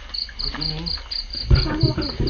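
Crickets chirping in a steady, high-pitched rhythm of about four chirps a second, with a low thump about one and a half seconds in.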